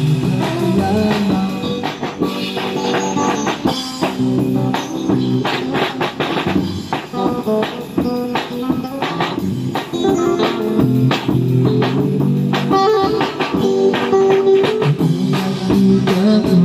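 Live street music: a small drum kit with snare, bass drum and cymbal played in a steady beat, under an electric guitar playing through a small portable amplifier.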